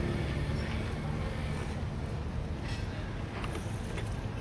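A boat engine running with a steady low rumble, with some wind noise on the microphone.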